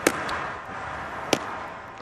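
A pitched baseball smacking into the catcher's mitt, one sharp pop, followed by a second sharp smack about a second and a half later.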